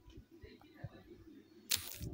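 Quiet pause with faint low background noise and a few soft ticks, then a short, sharp burst of noise near the end.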